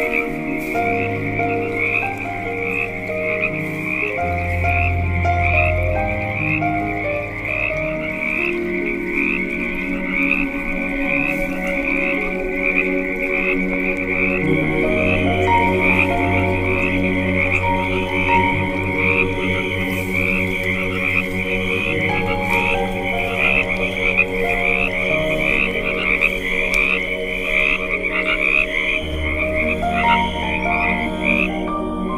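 A night chorus of frogs and crickets, a dense, continuous trilling of rapidly repeated calls, laid over slow ambient music made of long held notes that shift every few seconds.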